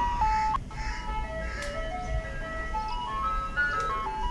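Ice cream truck jingle: a simple chiming tune of single notes, stepping down in pitch and then climbing back up.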